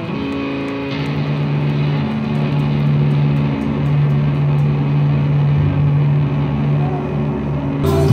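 A live rock band playing a slow, held passage: electric guitar and bass sustain long low notes, with little drumming.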